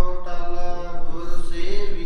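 A voice chanting Gurbani in long, held melodic notes that bend slowly in pitch.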